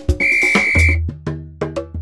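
A single steady whistle blast, just under a second long, over music with drum hits; as it ends, a deep bass note sets in under a regular clicking percussion beat.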